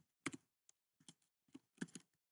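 Faint typing on a computer keyboard: about half a dozen separate keystrokes at an uneven pace.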